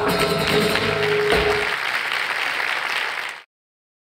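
Live flamenco music closing on a final accent about a second and a half in, followed by audience applause that cuts off suddenly near the end.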